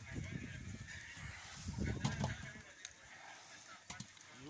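Low, indistinct voices, with a couple of sharp clicks about two seconds in and near the end.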